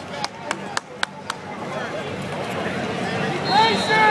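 Five sharp claps in quick succession, about four a second, in the first second and a half, followed by the chatter of voices in the arena.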